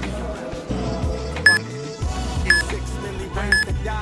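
Hip-hop music with a deep bass, overlaid by three short, high beeps a second apart from an interval timer counting down the last seconds of a 20-second work interval.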